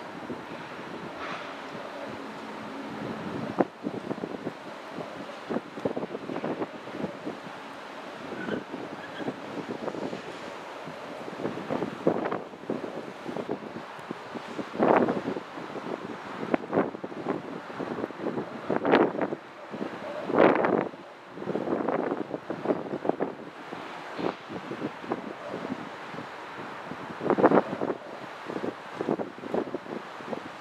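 Wind buffeting the camera microphone in irregular gusts, with the strongest blasts about halfway through and again near the end.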